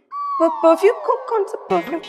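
Comic sound-effect sting: a long falling whistle-like glide that slides down over about a second and a half, over a few short musical notes.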